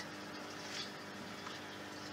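Faint, steady low hum with a soft, even hiss of water from a fish pond.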